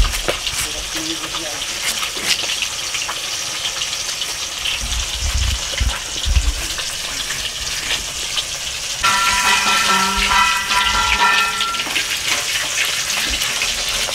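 Steady crackling sizzle of food frying in hot oil, with a few dull thumps as a taro corm is worked against a floor-mounted boti blade. A steady high-pitched tone with overtones sounds for about three seconds near the end.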